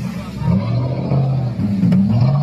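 Off-road side-by-side UTV engine revving up and down in surges as it churns through a muddy, water-filled ditch.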